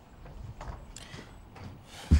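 Faint, irregular light knocks and taps, about half a dozen spread over two seconds, over low room tone.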